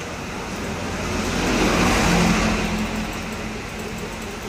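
A road vehicle passing: a noise that swells to a peak about two seconds in and then fades, with a low steady hum in its second half.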